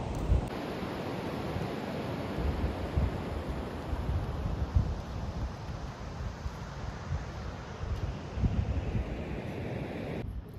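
Steady wash of ocean surf with wind gusting against the microphone in irregular low rumbles.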